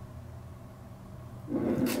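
Quiet room tone with a faint steady low hum; a woman's voice starts about one and a half seconds in.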